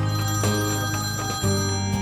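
A mobile phone ringing over sustained background music.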